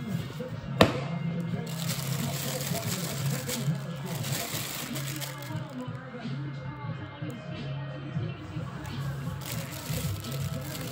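A sharp knock about a second in, then rustling and crinkling of a cardboard shoebox and the thin plastic wrap inside it as the box is opened and the shoe is handled. Music and talk play in the background.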